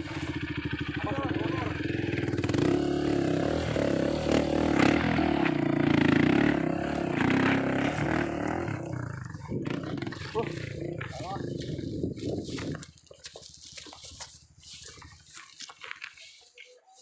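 Honda CRF trail bike's single-cylinder four-stroke engine running and revving unevenly under load as the bike is pushed and ridden up a steep rocky bank, dropping away sharply about thirteen seconds in.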